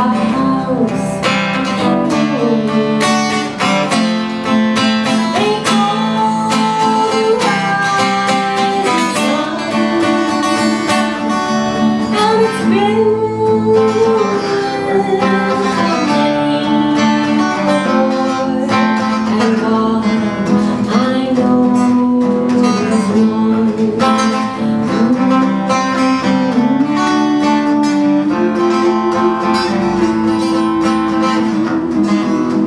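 Acoustic-electric guitar strummed and picked steadily through a song, with a man singing over it.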